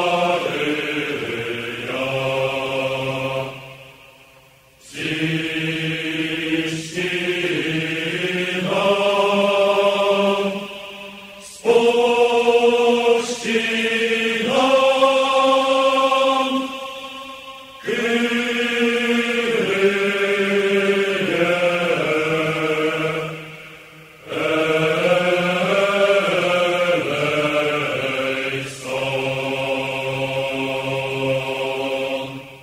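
Outro music: slow, chant-like vocal music sung in long held phrases of about six seconds, with brief pauses between them.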